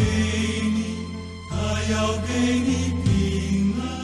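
Slow hymn music: sustained chords over a steady deep bass, changing about every second and a half.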